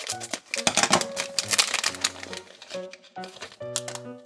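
A plastic blind bag crinkling as it is cut open with scissors and handled. The crinkling comes in dense bursts, loudest in the first half. Light background music plays under it.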